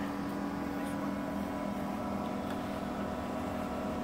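Pool circulation pump's electric motor running with a steady hum, several steady tones over a noisy wash.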